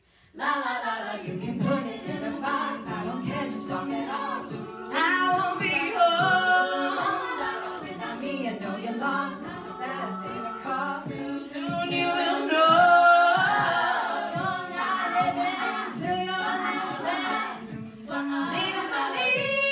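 A cappella vocal group singing a pop arrangement, lead voice over layered backing harmonies with a steady rhythmic pulse underneath. The voices come in together right after a short stop.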